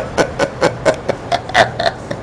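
A man laughing: a run of short, evenly spaced laughs, about four a second, that trails off near the end.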